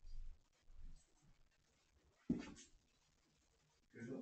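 Faint, soft low thuds of footsteps on a wooden floor, then one sharper knock a little over two seconds in.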